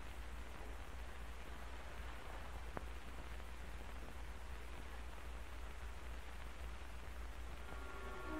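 Steady hiss and low hum of an old film soundtrack, with one faint click about three seconds in and faint music notes coming in at the very end. No shot is heard.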